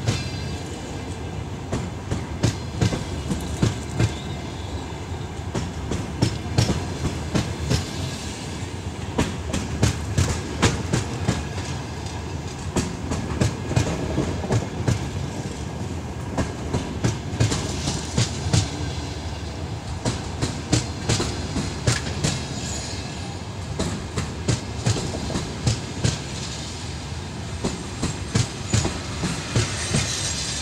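Passenger train coaches rolling past as the train pulls out, with a steady rumble of wheels on rails and a regular clickety-clack as the wheels cross rail joints.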